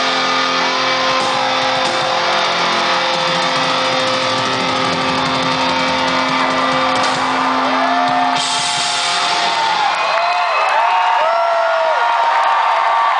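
Live rock band ending a song on a long held chord, electric guitar and cymbals ringing out until the chord stops about eight and a half seconds in. Then the crowd cheers and whoops.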